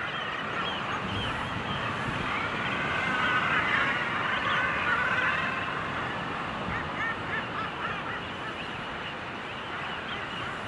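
A packed common guillemot breeding colony calling: many birds calling over one another in a continuous din that swells louder in the middle, with short curved call notes standing out near the end.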